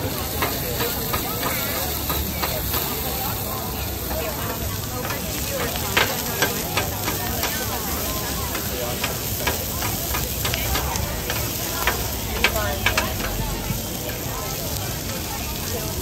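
Food sizzling steadily on a hot flat-top griddle, with irregular sharp clicks and scrapes of two metal spatulas chopping and tossing it on the steel plate.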